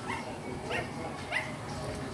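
Siberian husky puppy yipping three times, short high-pitched calls about half a second apart.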